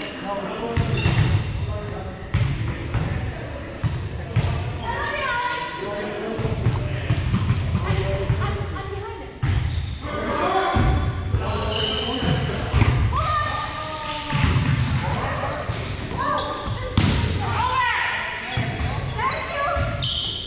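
Voices of several players calling out and chatting during indoor volleyball, over the thuds of a volleyball being hit and bouncing on a hardwood gym floor, echoing in a large hall.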